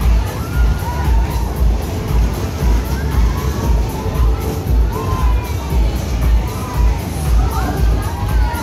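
Loud fairground ride music with a heavy bass beat, about two beats a second, while riders on the moving Superbob cars shout and scream.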